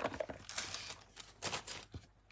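Paper cards and craft materials being handled on a table: a few short rustles and light taps, with a brief lull about a second in.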